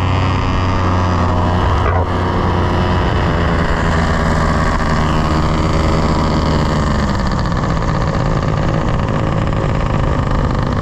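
Paramotor engine and propeller running steadily at cruise power in flight, heard close up from the passenger seat. The engine note changes slightly about seven seconds in.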